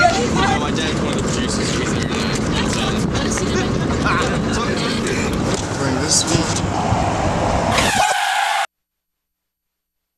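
Car and street noise mixed with indistinct voices, steady and loud, cutting off abruptly to silence about nine seconds in.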